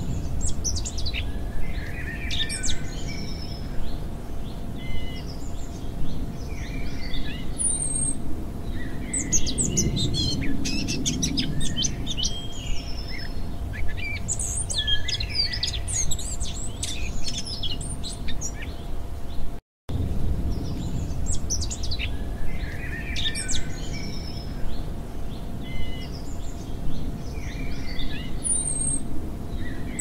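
Many songbirds chirping and singing over a low rumble and a faint steady tone. A brief gap comes about twenty seconds in, after which the same stretch of birdsong begins again: a looped birdsong ambience track.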